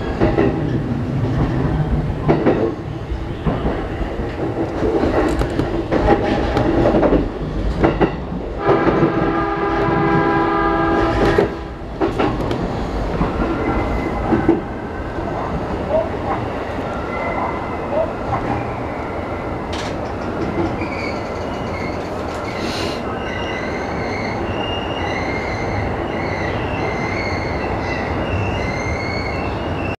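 Saikyo Line electric commuter train running into a station. Its wheels knock and clack over points and rail joints, and a train horn sounds for about two and a half seconds around a third of the way in. After that the running sound turns steadier and quieter as the train rolls along the platform.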